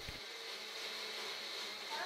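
Electric mixer grinder running steadily, faint, grinding sautéed ingredients into a fine paste.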